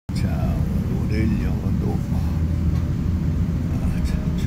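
A steady low rumble throughout, with faint, indistinct voices in the first couple of seconds.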